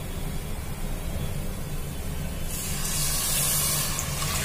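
Hot water poured into a pan of fried masala paste, hissing loudly as it hits the hot spices, starting about two and a half seconds in, over a steady low hum.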